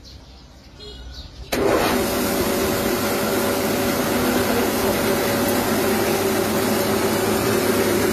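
Small mini rice mill switched on about a second and a half in, then running steadily with a dense whirring noise and a low hum.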